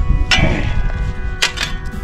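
Shovel driven into a pile of rock and dirt, its blade striking the stones with two sharp clanks, about a third of a second in and again near a second and a half in.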